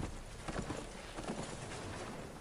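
Hoofbeats of a galloping horse from a film soundtrack, an uneven run of hoof strikes that slowly grows fainter.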